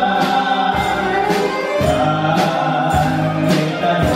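Live pop music: a woman singing sustained notes into a microphone over a band, with regular drum and cymbal hits.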